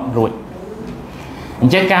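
A bird cooing faintly in a gap between a man's spoken words; speech picks up again near the end.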